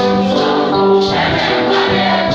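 A church choir of mostly women singing together in harmony, holding sustained chords, with a light percussion beat underneath.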